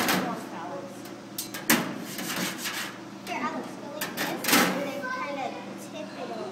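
Children's voices and indistinct chatter in a room, broken by three sharp knocks or clatters spread through the few seconds.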